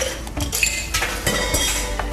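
Glassware clinking at a bar: several sharp clinks of glasses and bottles, some of them ringing briefly.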